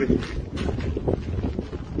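Wind buffeting the phone's microphone: a steady, uneven low rumble.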